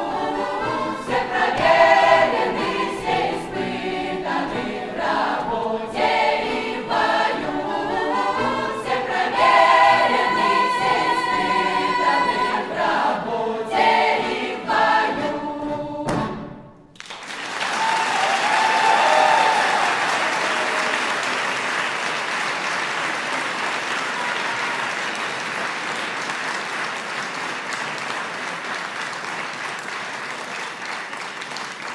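A Russian folk choir sings with its instrumental ensemble until the song ends about 17 seconds in. The audience then applauds, and the applause slowly fades.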